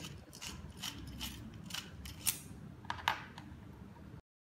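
Threaded battery cap of a pen-style fiber-optic visual fault locator being unscrewed by hand, giving a run of small irregular ticks and scrapes. A few sharper clicks come in the second half as the AA battery is drawn out of the metal tube.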